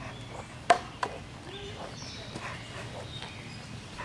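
Two sharp taps about a third of a second apart, roughly a second in, over a low steady hum.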